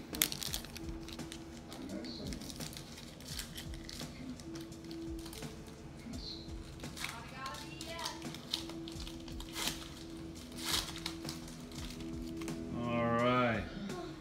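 Light clicks and crinkles of trading cards and torn pack wrappers being handled, over a steady low background tone. A voice is heard briefly near the end.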